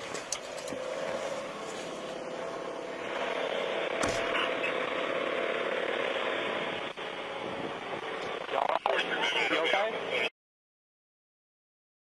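Muffled, unintelligible police radio traffic over a steady hiss, louder from about three seconds in. It cuts off suddenly near the end.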